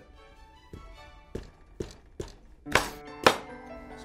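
Kitchen knife cutting through an eggplant onto a wooden cutting board: a series of separate knocks, the two loudest near the end about half a second apart, over background music.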